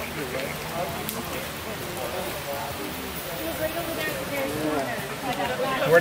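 Quiet, indistinct talk among several people over a steady outdoor hiss; a clearer voice begins right at the end.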